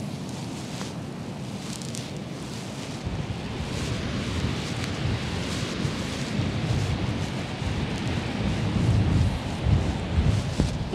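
Strong coastal wind buffeting the microphone, a low rumbling roar that gusts harder from about three seconds in and is strongest near the end.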